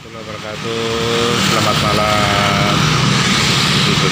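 Busy street traffic, mostly motorcycles and cars passing, fading in over the first second and then steady.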